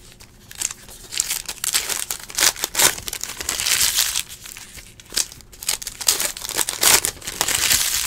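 Trading card pack wrappers crinkling and rustling in irregular bursts as sealed packs are handled and cards are sorted.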